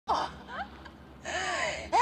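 A woman's voice in distress: a short cry right at the start, then a long, breathy gasp with a wavering pitch in the second half.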